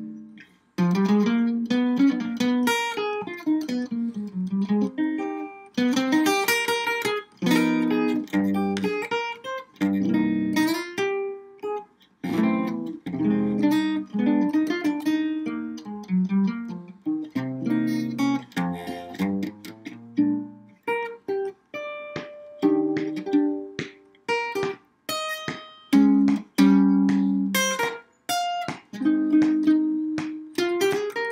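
Solo hollow-body archtop jazz guitar played unaccompanied, plucked chords mixed with single-note lines, in phrases broken by short pauses.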